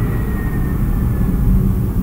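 A steady low rumble, with a faint thin high whine drifting slowly down in pitch.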